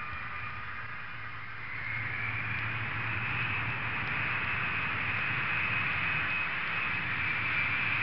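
Jet engine noise: a steady rush of air over a low hum, with a high whine that grows louder and climbs slightly in pitch from about two seconds in.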